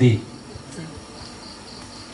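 Faint high-pitched chirping of insects, pulsing several times a second, under the room's quiet background.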